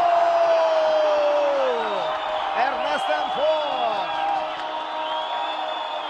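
Football commentator's long drawn-out goal shout, held on one pitch and falling away about two seconds in, over a stadium crowd cheering. More excited calls rising and falling in pitch follow.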